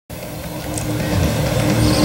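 A steady engine-like hum that grows louder.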